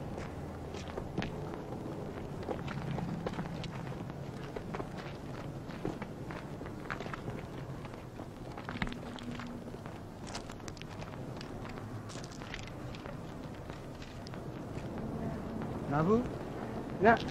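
Footsteps of several people walking on gravel and dirt: irregular short scuffs and steps, with a faint murmur of voices underneath.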